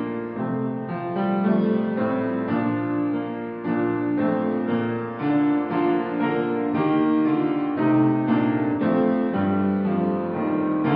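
Solo piano playing a hymn prelude: full sustained chords, a new one struck about twice a second at a steady, unhurried pace.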